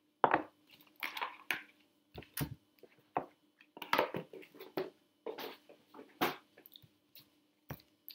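A deck of Rumi oracle cards being handled and shuffled by hand: a dozen or so irregular crisp snaps and rustles.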